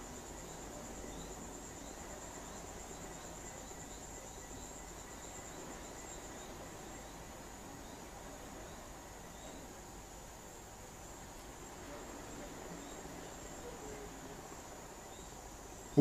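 Faint steady high-pitched whine over a low hiss, weakening about six seconds in, with soft ticks about twice a second for several seconds.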